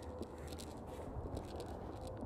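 Faint, steady background noise with no distinct sound events.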